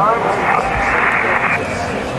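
A voice heard over a handheld amateur two-way radio, followed by a rush of static that cuts off suddenly about a second and a half in.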